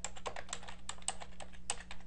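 Computer keyboard being typed on: a quick, uneven run of key clicks over a faint steady hum.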